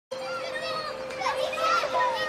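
High-pitched children's voices chattering over a steady hum.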